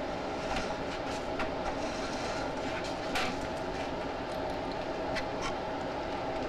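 Drain inspection camera's push cable being drawn back up a roof drain stack: a steady rumbling rattle with a faint hum and scattered sharp clicks, one louder click about three seconds in.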